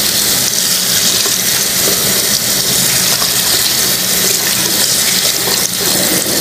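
Tap water running steadily from a faucet, the stream splashing onto a fabric bag held under it and into a sink basin. A faint low steady hum runs underneath.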